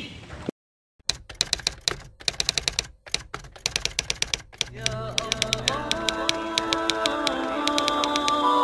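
Typewriter sound effect: rapid, irregular key clacks. About halfway through, soft music with held notes comes in under the clacks.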